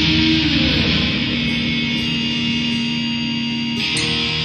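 Instrumental passage of a studio-recorded rock song with electric guitars holding chords. About half a second in, a note slides down in pitch into a new held note, and the chord changes near the end.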